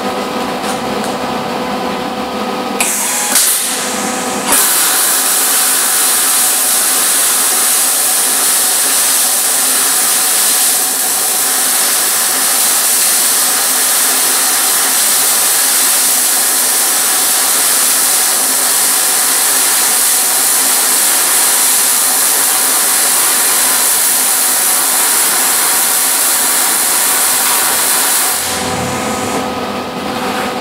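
MIG welding arc from an Everlast i-MIG 200 crackling and sizzling. After a couple of short starts a few seconds in, it runs as one long continuous bead and cuts off near the end. It spatters heavily because the rusty frame steel is only partly cleaned and the ground is not making good contact.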